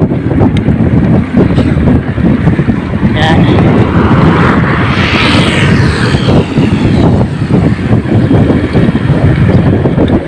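Wind buffeting the microphone of a handlebar-mounted camera on a moving bicycle, a dense steady rumble. In the middle, a broader rushing noise swells up and fades away over about two seconds.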